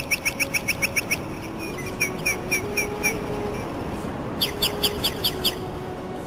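A bird chirping in quick runs of short, high notes. There are three runs: a fast one of about seven notes a second that stops about a second in, a slower, softer one in the middle, and a louder fast run near the end whose notes each drop in pitch. Faint held low tones sound underneath.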